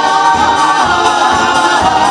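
A live soul band playing, with a female lead singer and backing vocals holding a long sung note over the full band.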